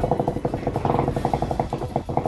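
Motorcycle engine running at low speed in slow traffic, with a rapid, even pulsing.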